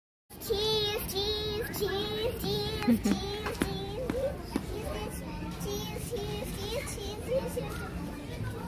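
A young girl's high-pitched voice in near-continuous sing-song chatter, starting just after a brief silence, over store background noise.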